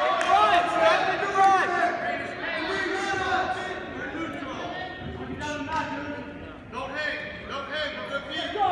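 Indistinct voices of spectators and coaches calling out and talking during a wrestling bout; the words cannot be made out, and the voices fade somewhat after the first few seconds.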